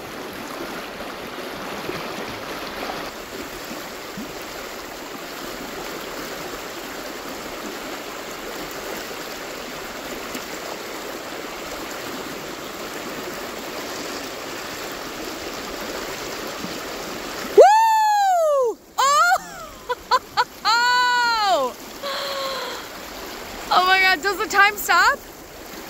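Shallow, rocky river rushing steadily past a wading angler. About three-quarters of the way through, a loud pitched sound swoops up and down in pitch several times, and the river noise drops out under the first swoop.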